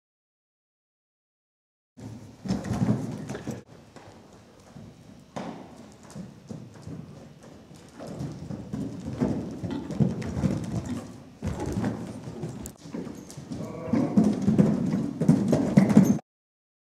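Hoofbeats of a horse cantering loose on soft arena sand, starting about two seconds in, with uneven thuds that come and go and grow louder near the end as it comes up to a jump.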